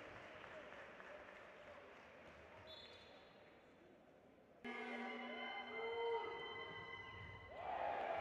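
Indoor handball court sound, faint and fading through the first half. About halfway in it jumps abruptly to louder hall noise carrying a few steady held tones, with a voice rising near the end.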